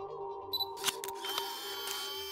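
Intro jingle music with camera-shutter sound effects: a sharp shutter click just under a second in, then a longer whirring shutter sound.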